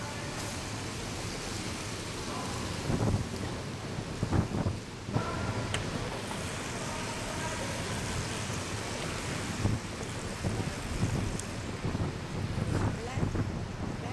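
Track bicycles riding past on a wooden velodrome: a steady rushing noise of tyres and air, with several louder swells as riders go by close.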